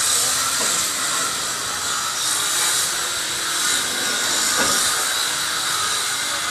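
A steady, loud hiss with no speech in it.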